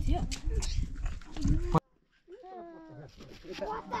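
People's voices, broken by a sudden half-second of silence a little under two seconds in, then resuming.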